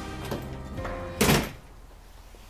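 Soft background music trails off, then a single short, loud thunk about a second in.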